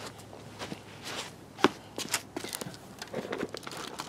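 Handling and scrubbing noises from a soapy sponge being worked on an alloy wheel: scattered short clicks and knocks, the sharpest about a second and a half in.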